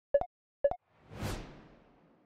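Animation sound effects: two short pitched ticks half a second apart, the last of a steady ticking series, then a whoosh that swells up and fades away as a transition to the next map.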